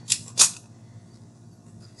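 Two short, sharp clicks about a third of a second apart from small craft pieces handled on a tabletop, the second louder.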